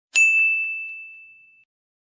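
A single bright, bell-like ding that rings out and fades away over about a second and a half, with two faint ticks just after the strike: an intro sound effect for a title card.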